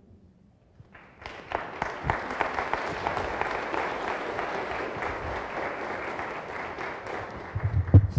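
Audience applauding in a hall, the clapping starting about a second in and going on steadily, easing slightly near the end.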